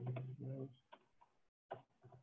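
Soft computer-keyboard typing, a few light key clicks, under a low, steady hummed 'mmm' from the typist that fades out before the second half.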